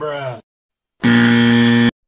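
A short rising vocal cry, then about a second in a loud, steady buzzer tone that lasts just under a second and cuts off suddenly: an edited-in buzzer sound effect.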